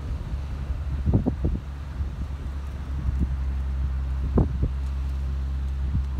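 Wind buffeting the microphone, heard as a steady low rumble, with a few short thumps about a second in and again past four seconds.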